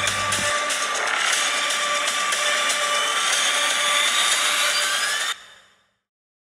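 A harsh, static-like noise effect on a trailer title card, steady hiss with a few thin tones in it and some rising tones near the end. It cuts off suddenly about five seconds in.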